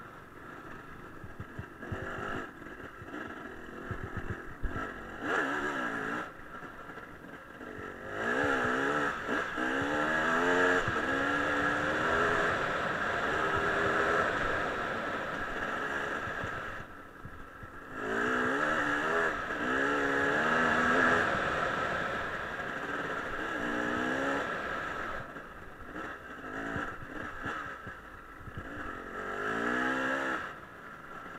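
Dirt bike engine on a gravel trail, revving up and falling back through the gears. It is louder with rising pitch about a quarter of the way in and again past the middle, and eases off in between and near the end.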